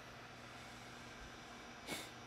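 Quiet room tone with a faint steady low hum and hiss; a short breath near the end.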